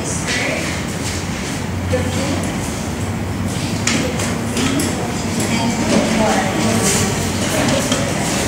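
Indistinct murmur of voices in a classroom, with a few light knocks and shuffles.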